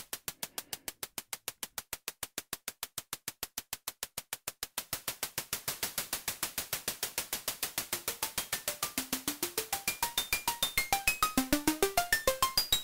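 Rapid, evenly spaced bursts of noise from the ST Modular Honey Eater oscillator's noise source, gated at about eight hits a second. The hits grow louder and brighter, and from about eight seconds in short synth blips at shifting pitches come in among them.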